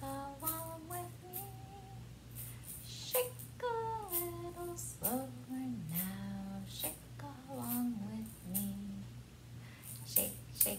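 A woman singing a slow children's shaker song, "shake a little slower now, shake along with me", with an egg shaker rattling in time with the song.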